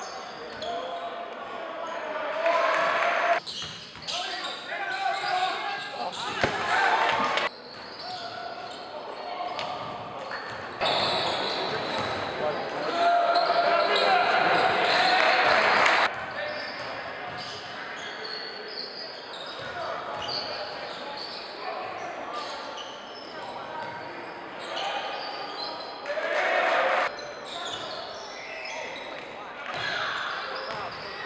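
Live basketball game sound in a large, echoing gym: spectators' and players' voices mixed with a basketball bouncing on the hardwood. The sound changes level abruptly several times where clips are spliced, with a louder crowd stretch in the middle.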